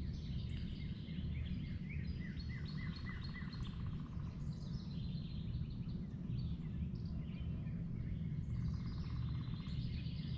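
Several songbirds singing and chirping in woodland, with overlapping series of short repeated notes and a rapid trill heard twice. A steady low rumble runs underneath.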